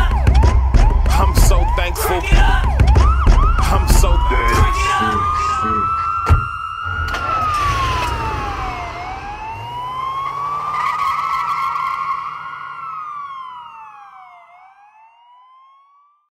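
Hip-hop beat with a fast yelping siren over it. The beat stops about five seconds in, leaving the siren as a slow rising and falling wail that fades out near the end, with a single sharp click about six seconds in.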